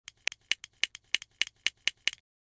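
Plastic LEGO bricks clicking, a quick run of sharp clicks about five or six a second, alternating louder and softer.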